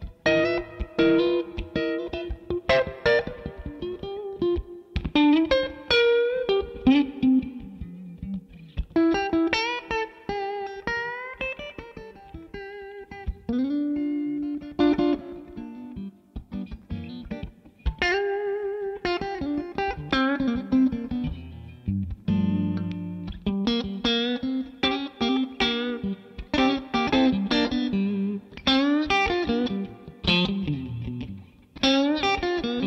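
PRS Private Stock Modern Eagle V electric guitar played through a Victory V40 Deluxe valve amp: improvised blues-rock lead lines, mostly single-note runs with string bends and vibrato, with an occasional chord.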